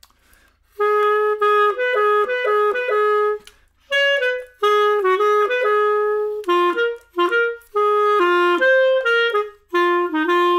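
Solo clarinet playing a swung jazz-waltz phrase in short, separate notes, starting about a second in, with a short break about halfway through.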